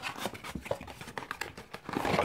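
Cardboard watch packaging being handled by hand: a run of small rustles, scrapes and light taps as the inner box is slid out of its carton, louder near the end.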